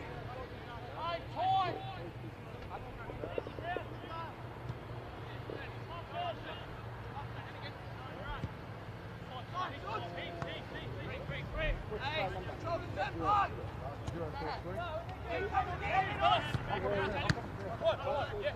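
Voices of players and onlookers calling out and talking around a football pitch, heard at a distance in short scattered shouts, with a steady low hum underneath.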